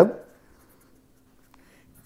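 A man's spoken word trailing off, then a pause of room tone with a faint steady hum and one faint tick about one and a half seconds in.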